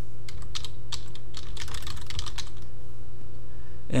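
Typing on a computer keyboard: a quick run of key clicks over the first two and a half seconds, then stopping, over a steady low hum.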